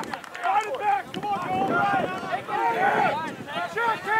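Several voices shouting and calling out over one another, from players and people on the sideline of a lacrosse game.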